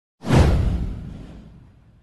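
A single whoosh sound effect for an animated intro, with a deep low rumble under it, starting sharply and fading away over about a second and a half.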